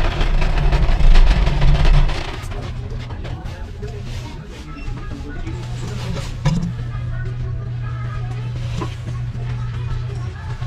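Background music playing at a moderate level under a loud low rumble of camera handling noise in the first two seconds, then a steady low hum.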